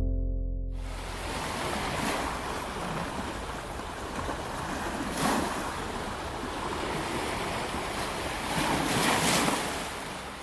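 The song's last held chord dies away within the first second, and then ocean surf washes on a beach: a steady rush of water that swells about three times.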